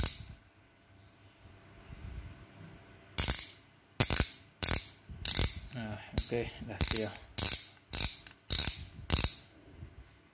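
Ratchet mechanism of a Top 19×22 mm ratchet wrench clicking as its head is turned by hand. There is a sharp click at the very start, then from about three seconds in about eleven quick ratcheting bursts, roughly two every second.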